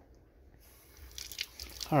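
Kitchen sink tap turned on, water starting to run faintly into the sink after a near-silent start, with a few light clicks about a second in.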